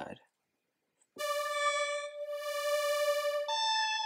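Helium software synthesizer playing a held note that starts about a second in. Near the end the tone steps abruptly to a different set of pitches as X Evolve cycles from the oscillator A side to the B side.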